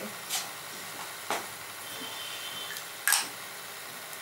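Steady low hiss with a sharp click about a second in and two short rustling hisses, one near the start and one about three seconds in, from a small object being handled.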